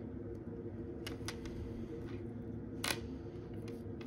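A few small metallic clicks, the loudest about three seconds in, as a 14K gold-filled box clasp on a beaded necklace is handled between the fingers, over a steady low hum.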